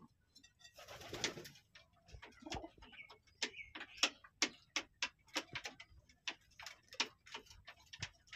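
Domestic pigeons in a wooden loft: a brief rustle about a second in, then a run of short, sharp taps and clicks, roughly two or three a second, with faint pigeon calls.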